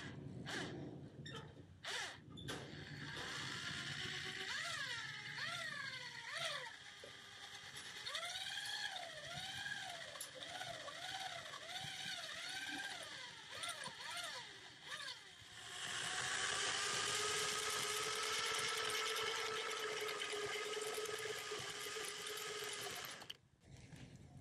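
Corded electric drill with a paddle mixer stirring cement-based waterproofing slurry in a metal bucket. The motor's pitch rises and falls again and again, about once a second, then it runs at a steady pitch for several seconds and stops just before the end.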